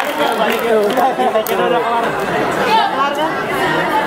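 A crowd of many voices chattering and calling out at once in a large hall, with no music playing.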